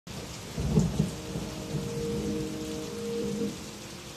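Steady rain with a short low roll of thunder about half a second in, forming a song's intro. Soft held notes sound over the rain partway through.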